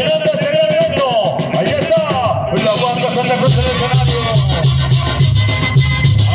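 Mexican banda (brass band) music playing, with a wavering melody line, and a deep rhythmic bass line, typical of the band's tuba, coming in about halfway through.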